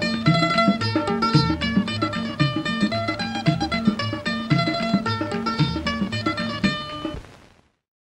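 Instrumental close of a 1950s Hindi film song: plucked strings play a run of notes over a steady drum beat, then the music fades out about seven and a half seconds in.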